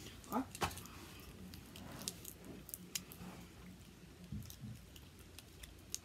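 Faint crinkling and small scattered clicks of a chewy sweet's paper wrapper being picked open by fingers, with soft chewing.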